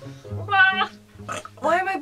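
A woman burping: one short, pitched burp about half a second in, over quiet background music.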